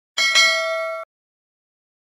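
Notification-bell 'ding' sound effect for a subscribe button: a bright metallic bell strike a quarter second in, ringing on several steady tones for under a second, then cut off abruptly.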